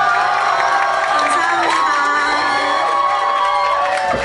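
Concert audience cheering, with many high-pitched screams and whoops at the end of a song.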